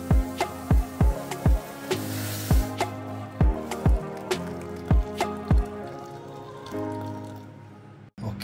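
Background music with a steady beat of deep, falling kick-drum thuds, about two a second, fading near the end. Under it, water being poured into a steel pan of vegetables gives a faint splashing hiss.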